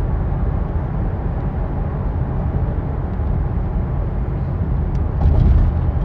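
Steady low rumble of background noise with no clear events, swelling briefly near the end.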